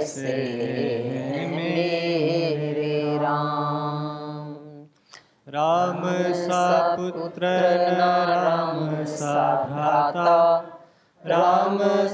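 Devotional Hindi bhajan music in praise of Ram: a melody held on long notes over a steady low accompaniment, in two long phrases with a brief break about five seconds in.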